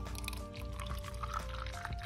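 Lemon ice-lolly mixture poured in a thin stream from a plastic jug into a silicone mould, under background music with long held notes.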